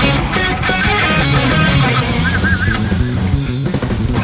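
Electric guitar played over a rock band backing track, with a held note wavering in pitch a little past two seconds in.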